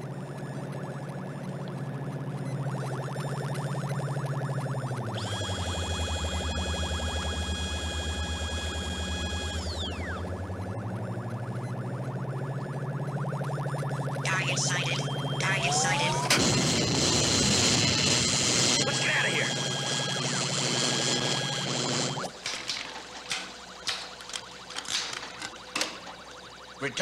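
Synthesized science-fiction soundtrack for an approaching robot: a low electronic drone with a fast ticking pulse, which sinks in pitch and rises again under several held high tones. About two-thirds through, a loud crackling, rushing burst with gliding whines takes over, then cuts off sharply.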